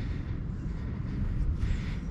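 Wind buffeting an outdoor microphone: an uneven low rumble that rises and falls with the gusts.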